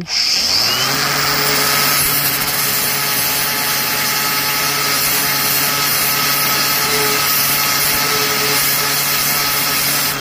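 Flex angle grinder with a see-through flap disc spinning up and then grinding steadily into the edge of a metal plate: a constant motor whine over the hiss of abrasive on metal.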